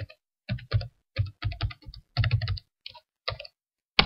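Password being typed on a computer keyboard: about a dozen separate keystrokes at an uneven pace, with one more sharp key press right at the end.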